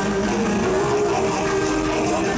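Live band music over an arena sound system, mostly held keyboard chords that change now and then, recorded from the audience.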